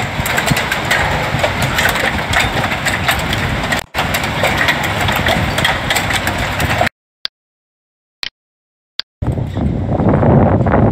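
Hailstorm: a dense rush of hail and heavy rain with many sharp taps of hailstones striking. About seven seconds in it breaks off to two seconds of silence with three short clicks, then the storm comes back as a lower rush with wind.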